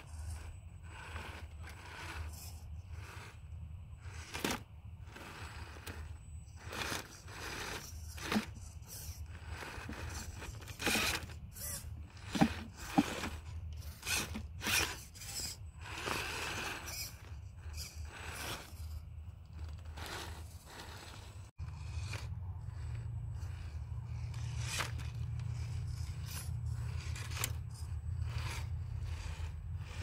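Axial Capra 1.9 RC rock crawler clambering over sandstone rocks: irregular clicks, knocks and scrapes of its tyres and chassis on the rock. A low steady rumble runs underneath and is louder from about two-thirds of the way in.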